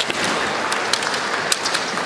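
Bamboo shinai clashing in a kendo bout: about five sharp, short cracks of the swords striking each other and the armour, the loudest about a second and a half in, over a steady hall crowd noise.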